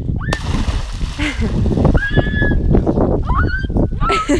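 A person plunging feet-first into a lake: a sudden splash about a third of a second in, then water churning and sloshing around her. A high voice cries out briefly twice in the second half.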